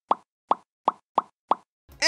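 A quick run of five short, identical pops, about three a second, with dead silence between them. It is a cartoon pop sound effect, one pop for each plastic armor part pulled off a Gunpla Core Gundam 2 model.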